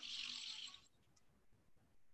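A pause in speech: a faint, even hiss from an open microphone cuts off under a second in, leaving near silence.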